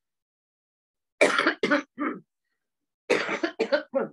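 A woman coughing: a run of three short coughs about a second in, then a quicker run of coughs near the end.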